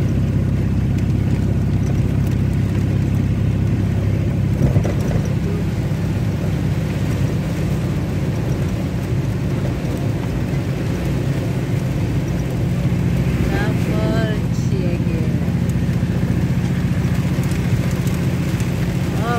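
A vehicle's engine and road noise drone steadily at driving speed, heard from inside the cab, with heavy rain beating on the windshield as the wipers sweep.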